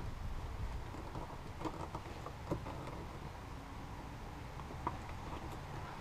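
Faint, scattered clicks and scrapes of a small screwdriver working the plastic release clips of a fuel-line quick connector, over a low steady background rumble.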